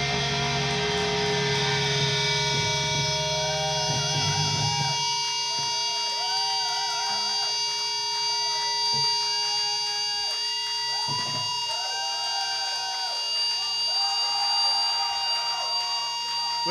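Electric guitars ringing out on a final held chord with steady feedback tones. About five seconds in, the bass drops away, leaving the sustained feedback and wavering, bending guitar notes over it.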